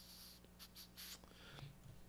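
Near silence: quiet room tone with a steady low hum and a few faint, brief scratchy rustles in the first second or so.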